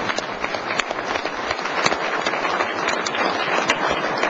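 A large audience applauding: dense, steady hand-clapping.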